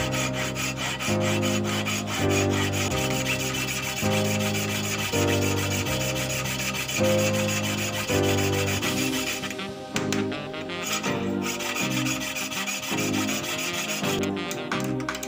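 Flat hand file rasping back and forth on a sewing machine's metal handwheel, filing it down to fit the hand crank, over background music with chords changing about once a second.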